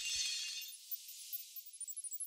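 Glassy, sparkling shimmer sound effect for an animated title. It swells in at once and fades out over about two seconds, with scattered high tinkles near the end.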